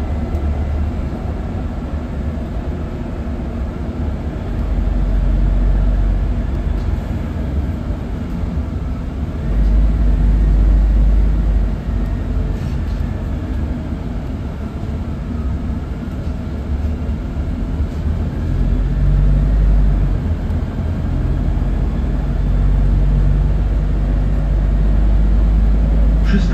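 Interior of a Scania N280UB city bus on the move: the steady low drone of its compressed-natural-gas engine and drivetrain with road rumble, swelling louder several times.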